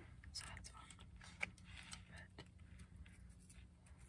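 Faint whispering with soft clicks and taps from handling, one sharper click about a second and a half in.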